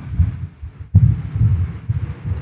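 Low, uneven thumping rumble with a single sharp click about a second in.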